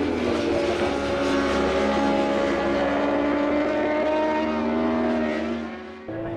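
JSB1000 superbikes' 1000 cc four-stroke engines running at high revs as they pass through a corner, the engine pitch gliding slowly down. The sound fades out near the end.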